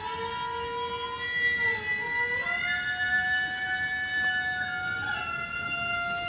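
Japanese shrine court music (gagaku-style wind instruments) accompanying a ritual dance: long held reedy notes, two or more at once, that slide from one pitch to the next every second or two.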